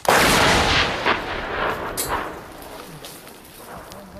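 Large towed artillery gun firing a round: a sudden blast right at the start, followed by a rumbling echo that fades over about three seconds.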